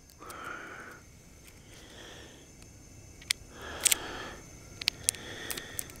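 A person breathing audibly through the nose, four soft breaths about a second and a half apart, with a few faint clicks from fingers handling the baitcasting reel while taping down the line knot on the spool.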